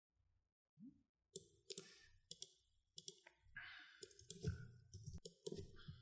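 Faint computer mouse clicks: a run of sharp, separate clicks starting about a second and a half in, with a low rumble building in the last couple of seconds.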